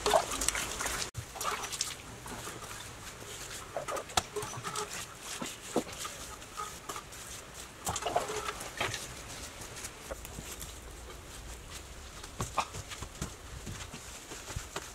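Chickens clucking now and then in the background, with scattered light knocks and scrapes.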